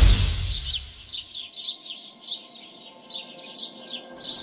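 Small songbirds chirping: a string of short, high, falling chirps repeated several times a second.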